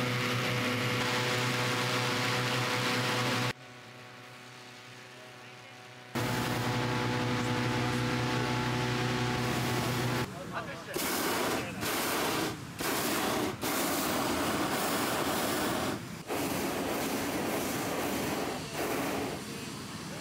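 Hot-air balloon being inflated: a steady loud droning, with a quieter stretch of a few seconds near the start. From about ten seconds in the propane burner fires in a series of blasts, each up to a couple of seconds long, with short gaps between them.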